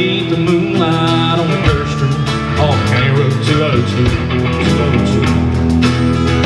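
Live country rock band playing, with electric and acoustic guitars, bass guitar and a drum kit.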